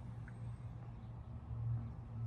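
Quiet outdoor background: a low steady rumble with a faint hiss and no distinct event.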